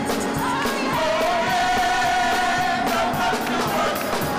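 A small group of women singing gospel praise in harmony, with instrumental backing and a steady beat. One long note is held through the middle.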